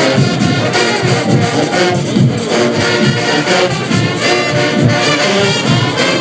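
Live brass band playing loudly, with horns over steady, driving percussion strikes.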